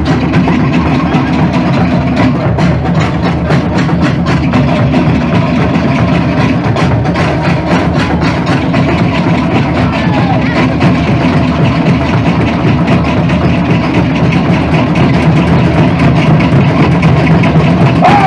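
Tahitian drum ensemble playing loud, fast, steady rhythms for an ʻōteʻa dance: the rapid clatter of tōʻere wooden slit drums over deeper pahu drum beats.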